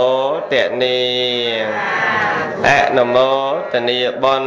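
A Buddhist monk's voice chanting in drawn-out melodic phrases. It holds long notes with slides in pitch, with short pauses between phrases.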